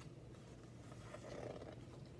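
Faint rustle of a picture book's paper pages being turned, slightly louder about a second in, over a low steady hum.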